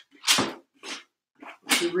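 Plastic credit card scraping thick acrylic gel medium across the back of a canvas, in a few short separate strokes.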